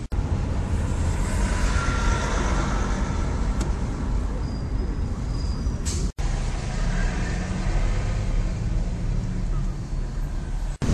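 Steady low road and engine rumble of a car driving in city traffic, heard from inside its cabin, cutting out for an instant about six seconds in.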